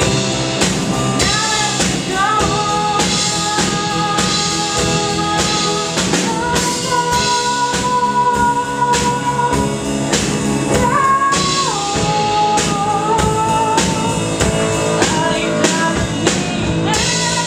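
Live band playing a pop ballad: a woman sings long held notes, one sustained for several seconds midway, over drum kit, grand piano and electric guitar.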